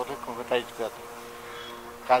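A man speaking in Nepali, then holding a steady hesitation hum ("uhh") for about a second before carrying on.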